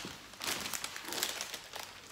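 Clear plastic wrapping on a bunch of cut flowers crinkling in irregular rustles as the bunch is handled.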